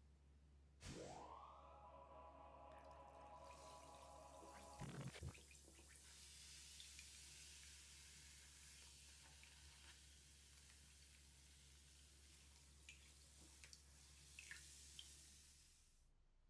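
Faint fizzing hiss of a homemade bath bomb dissolving in bathwater, with a few small drips and ticks. Early on, a tone rises quickly and holds for about four seconds, then cuts off, with a short louder splash-like burst as it ends.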